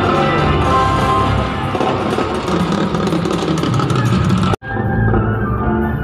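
Loud live band music from a concert stage, recorded on a phone among the audience. About four and a half seconds in it cuts off abruptly, then picks up again sounding duller, with less treble.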